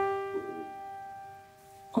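Piano notes G, E-flat and G, just played in a descending right-hand pattern, ringing on and fading away over about a second and a half.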